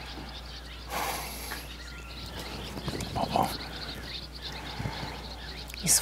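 Outdoor ambience with faint, scattered bird chirps over a steady low hum. There is a brief noise about a second in, a short louder sound around three and a half seconds, and a click near the end.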